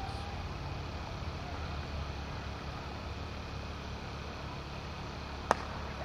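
A single sharp crack of a cricket bat hitting the ball near the end, over a steady low background hum.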